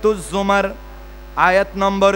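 A man's voice through a public-address microphone and loudspeakers in drawn-out phrases, with a short pause about midway, over a steady low electrical mains hum.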